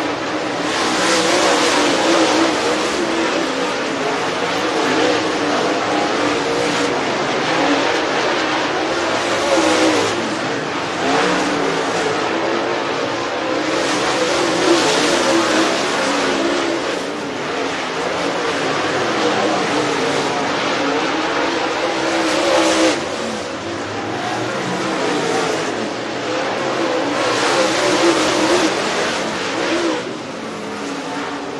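Several dirt super late model race cars running hot laps on a dirt oval, their V8 engines rising and falling in pitch as they accelerate and ease off through the turns. The sound is continuous, with swells every few seconds as cars come past.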